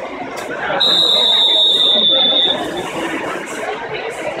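Swim referee's long whistle blast, one steady high tone of under two seconds starting about a second in: the signal for backstroke swimmers to enter the water. Crowd chatter runs underneath.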